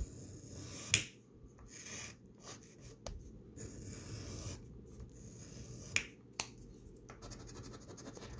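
A red plastic scratcher coin scraping the coating off a scratch-off lottery ticket in a run of short, quiet strokes, with a few sharp clicks among them.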